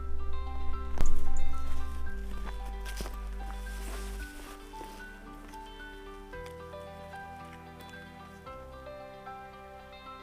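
Instrumental background music with held, stepping notes over a changing bass line. A sharp click cuts across it about a second in, with a few fainter clicks around three seconds.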